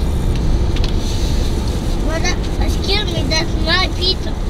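Steady low road and engine rumble inside a moving car's cabin. About halfway through, a high-pitched voice rises over it with several short calls.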